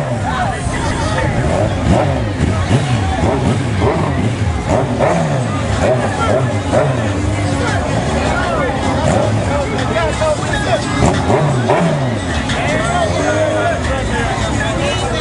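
Crowd chatter over motorcycle and four-wheeler engines idling, with an engine revving up and dropping back several times.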